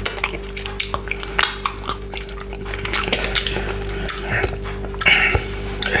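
Close-miked wet mouth sounds of fingers being licked and sucked clean of chopped frozen pineapple: irregular sticky smacks and clicks, with light clinks from a glass bowl, over a steady low hum.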